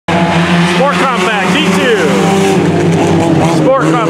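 Engines of several sport compact race cars running together at racing speed on a dirt oval, a loud steady drone of overlapping engine tones. A voice talks over it.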